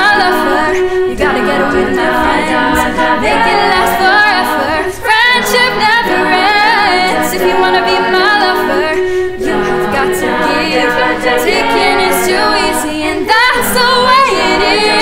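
High-school a cappella group singing live in close multi-part harmony through face masks, sustained chords over a steady beat of sharp ticks.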